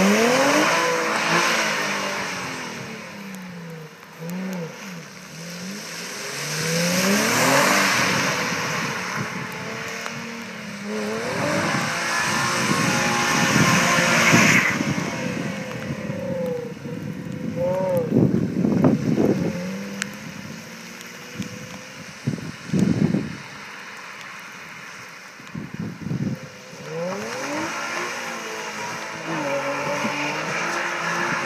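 Infiniti G35 coupe's V6 engine revving up and down over and over as the car slides in circles on wet pavement, each surge of revs joined by the hiss of the rear tyres spinning through water. In the second half come a few short, choppy bursts of revs.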